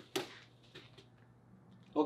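A quick swish and slap of a foot landing on a foam mat as a martial artist drops into a stance, loudest just after the start, followed by a few faint shuffles.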